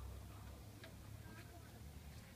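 Faint scattered clicks, twice about a second in and again, over a low steady rumble.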